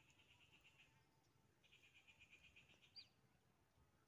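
Near silence, with a small animal's faint high trill, about ten pulses a second, heard twice, then a short high chirp about three seconds in.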